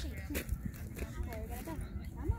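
People talking, over a constant low rumble.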